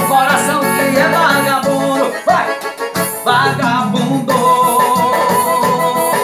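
A piseiro (pisadinha) song played on an electronic keyboard: a lead melody with bending notes over a steady bass and beat, with a voice singing. A long held note comes about four seconds in.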